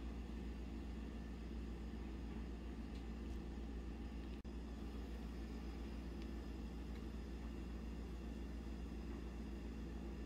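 Steady low background hum with no other sound standing out, broken by a brief dropout about four and a half seconds in.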